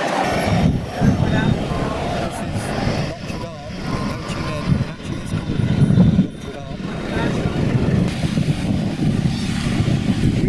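City street background: a steady traffic rumble with people's voices mixed in.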